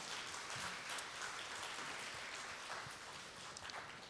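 Audience applauding, a fairly faint even patter of clapping that tails off a little near the end.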